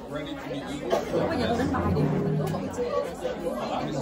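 Overlapping chatter of several people talking at once, a group conversation with no single voice standing out.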